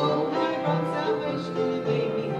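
A hymn sung with piano accompaniment, its held notes changing every half second or so.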